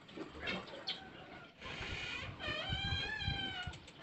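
A single drawn-out animal call, steady in pitch with a slight waver, lasting about a second and a half in the second half, over faint background noise with a few soft knocks.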